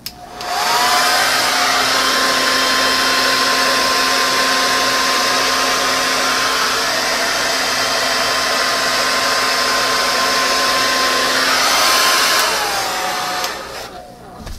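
Hair dryer with a nozzle attachment, running on its high setting: the motor whine rises as it spins up just after the start, runs steady with the rush of air, then falls away as it is switched off near the end.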